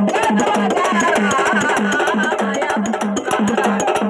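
Live folk music: a drum beating about four times a second under fast clicking percussion, with a voice singing a wavering melody over it.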